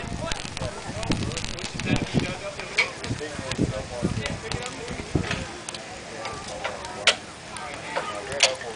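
Flux sizzling and crackling under an acetylene-heated soldering iron as it melts bar solder into a flat-lock copper roofing seam, with a few sharp crackles standing out. Voices chatter in the background.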